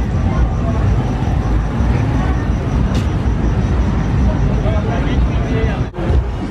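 Busy street noise: a steady low rumble of traffic with people talking, and one sharp click about three seconds in.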